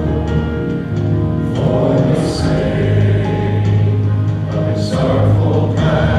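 Live praise and worship band: several voices singing long held notes over keyboard, guitars, bass and drums, with brief cymbal-like hiss about two and five seconds in.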